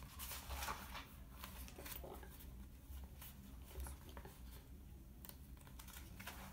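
Faint rustling and small clicks of paperback book pages being handled and turned, a few short rustles scattered through, the fullest in the first second.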